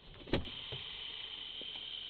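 A car door shuts with a single thump about a third of a second in. A steady high-pitched chirring of night insects follows it.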